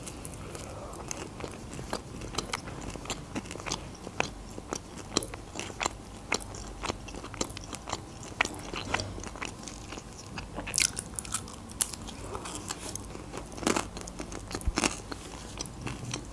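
Close-miked biting and chewing of a slice of homemade pizza: irregular crisp crunches and mouth clicks, several a second.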